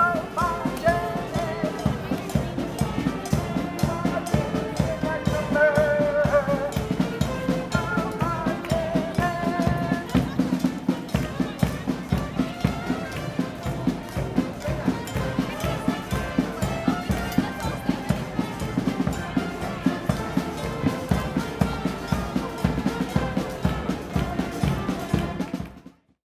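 Brass street band playing an upbeat tune: saxophones, trumpets, trombone and sousaphone over a steady drum beat, with the horn melody clearest in the first ten seconds. The music fades out at the very end.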